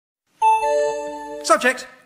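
A two-note ding-dong chime sound effect, the second note entering a moment after the first, both notes held and ringing on until a man's voice begins about a second and a half in.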